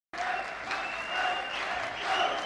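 Audience applauding, a dense even clatter, with a thin high tone held for about a second in the middle.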